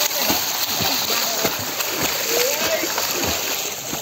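Swimmers splashing in a pool, with continuous irregular water splashes from kicking close by, and voices in the background.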